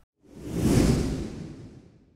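A whoosh transition sound effect marking a section title sliding onto the screen: it swells up about a quarter second in, peaks, and fades away over about a second, a deep rumble under a high hiss.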